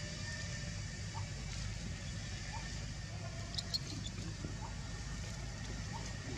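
Outdoor ambience: a steady low rumble with a faint high hiss, short faint chirps every second or two, and a couple of sharp clicks a little past halfway.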